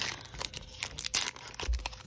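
Foil wrapper of a Panini Mosaic soccer trading-card pack crinkling and tearing open under the fingers, a quick run of sharp crackles.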